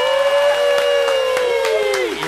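A male trot singer holding one long, loud final note at the close of a song, over the backing track, the pitch sagging slightly near the end.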